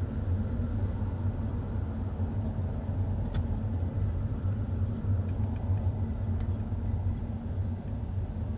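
Steady low rumble of a car driving, road and engine noise heard from inside the cabin, with two short faint clicks about three and six seconds in.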